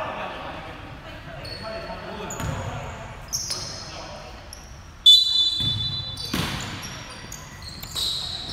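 Pickup basketball on a hardwood gym court: short, high sneaker squeaks and a basketball bouncing, echoing in a large hall. A sharp knock about five seconds in is the loudest sound.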